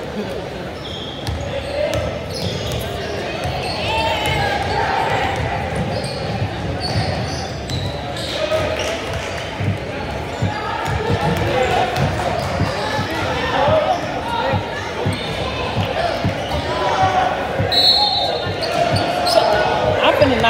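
Basketball game sounds in a gymnasium: a ball bouncing on the hardwood floor and short sneaker squeaks, under indistinct chatter from players and spectators, all echoing in the hall.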